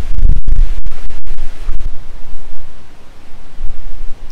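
Wind buffeting the microphone: a loud, low rumbling noise with several brief dropouts in the first two seconds, easing a little after that.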